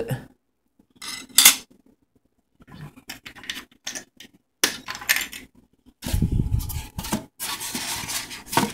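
Small household items being handled on a table: clinks, scrapes and rubbing of metal and glass in several short, irregular bursts, with a dull knock of handling on the microphone about six seconds in.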